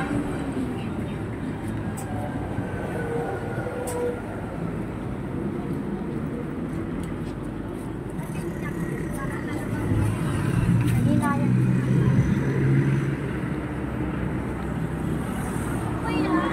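Roadside traffic noise: a steady wash of passing vehicles with scattered voices, swelling louder for a few seconds about ten seconds in as something passes close.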